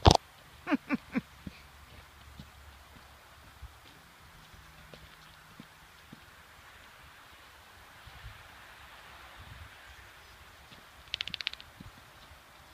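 Faint footsteps on a dirt road over quiet outdoor background, with sharp knocks at the very start and a brief rapid ticking trill near the end.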